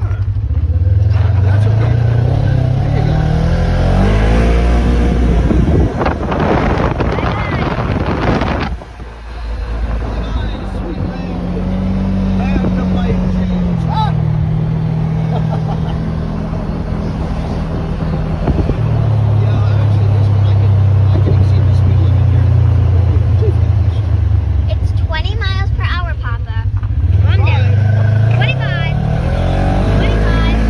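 Side-by-side off-road vehicle's engine accelerating, its pitch climbing over the first few seconds, easing off briefly, then running at a steady cruising drone with small shifts in pitch, and climbing again near the end.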